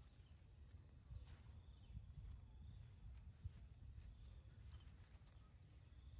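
Near silence: faint outdoor ambience with a low rumble and a few faint scattered clicks.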